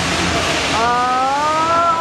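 A child's high voice gives one long drawn-out exclamation, rising slightly in pitch and held for over a second, after a brief rush of hissing noise.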